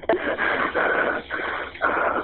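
A woman breathing heavily over a telephone line: about four loud, ragged breaths in quick succession.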